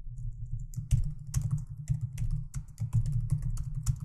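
Fast typing on a computer keyboard: a quick, uneven run of key clicks, picking up just under a second in, over a steady low hum.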